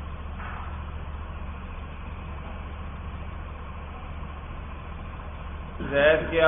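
A steady low hum with a faint hiss behind it: the room and recording background noise, with no distinct event.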